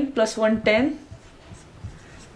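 A woman's voice for most of the first second, then the faint scratch of a marker writing on a whiteboard.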